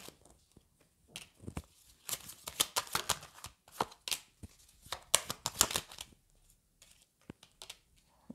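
A deck of tarot cards handled in the hands and dealt onto the table: a run of soft, short papery swishes and flicks, thinning out after about six and a half seconds into a few light clicks.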